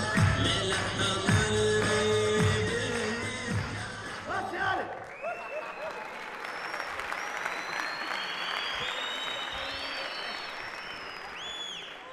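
Lively music with a steady beat plays and stops about four and a half seconds in; then the theatre audience applauds.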